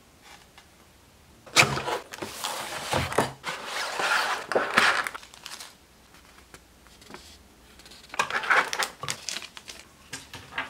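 Model-train packaging being handled: crinkling and rustling with small knocks as the box is opened and its contents taken out, from about one and a half to five seconds in and again briefly near the end.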